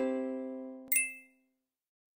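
The final chord of a short sung music jingle dies away. About a second in comes a single bright chime-like ding that rings briefly and fades.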